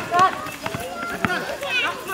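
Basketball players and onlookers calling and shouting to each other, loudest at the start, with the knocks of running feet on the concrete court between the voices.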